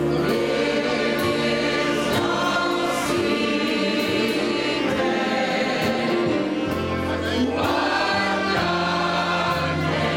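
Congregation singing a gospel hymn together over a musical accompaniment of held bass notes.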